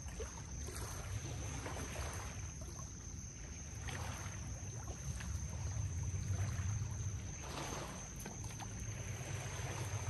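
Small waves lapping against a rocky shoreline in soft washes every second or two, over a steady low rumble.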